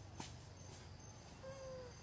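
A macaque gives one short coo call near the end, falling slightly in pitch. A faint click comes just before it, over a faint steady insect hum.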